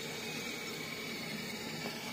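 Steady outdoor background noise: an even, faint hiss with no distinct events.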